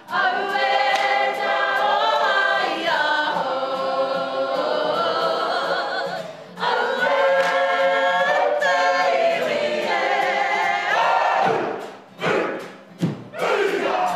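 A kapa haka group of men and women singing an action song together in unison, with a short break about halfway and the singing breaking off into short bursts near the end.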